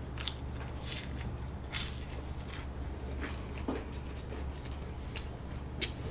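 Close-miked chewing of a strawberry French Pie, a flaky puff-pastry biscuit with jam: scattered short, crisp crunches of the pastry between the teeth, about a dozen over the few seconds.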